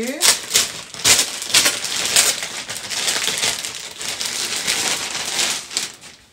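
Thin plastic packaging bag crinkling and crackling in the hands as it is opened and a garment is pulled out, in a run of sharp bursts that stops just before the end.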